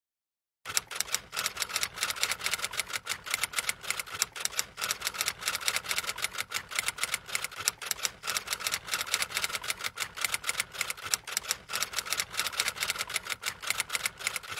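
Typing sound effect, a rapid, steady clatter of typewriter-style key clicks that starts about half a second in and runs on, matching text being typed out on screen.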